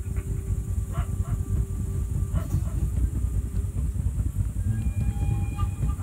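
Live ambient improvised music: a dense low rumbling drone with a faint steady hum, scattered light clicks, and sustained higher tones entering from about five seconds in.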